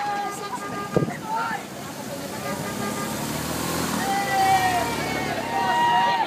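Police motorcycles riding past close by, their engine sound building to its loudest a few seconds in, while roadside spectators call out in high voices. There is a single sharp knock about a second in.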